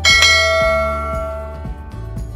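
A bell chime sound effect strikes once and rings away over about a second and a half, over soft background music.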